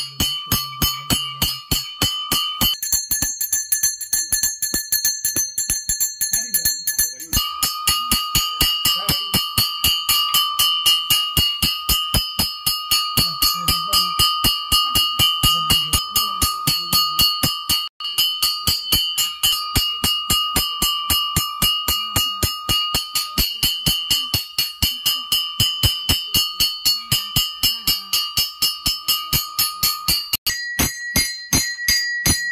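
Puja bell rung steadily, about three strokes a second, each stroke ringing on. The bell's pitch changes twice in the first few seconds.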